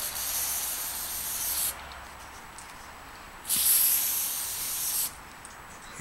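Aerosol spray-paint can hissing in two sprays: the first stops about a second and a half in, the second starts just past halfway and stops near the end.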